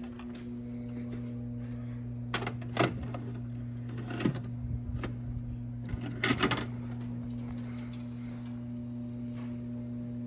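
VHS cassette pushed into a Panasonic VCR: a few clicks and clunks from about two seconds in to just past six seconds as the deck takes the tape and loads it. A steady low electrical hum runs underneath.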